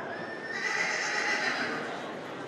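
A horse whinnying: a thin, high call that starts about half a second in and fades out near the end.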